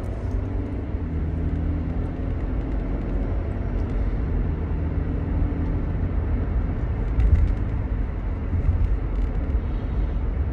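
Steady low rumble of a car's engine and tyres on the road, heard from inside the cabin while driving, with a brief louder bump about seven seconds in.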